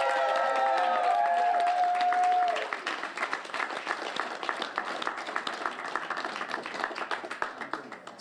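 Crowd applauding and cheering. For the first two and a half seconds several voices hold long whoops over the clapping, then the clapping goes on alone, a little quieter.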